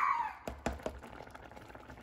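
Plastic slotted spoon knocking against the side of a stainless steel saucepan of yellow rice while stirring: three quick light knocks about half a second in.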